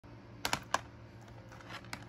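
Handling noise from a plastic DVD case being picked up: three sharp clicks and taps in quick succession, then another click near the end, over a faint steady hum.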